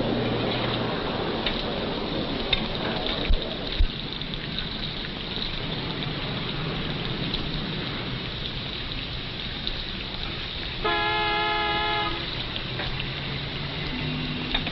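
Steady noisy background with two sharp knocks about three and a half seconds in, and one held horn-like tone lasting about a second near the end.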